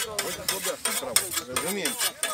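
Hand scythes cutting through tall grass, one hissing stroke after another, with people's voices talking underneath.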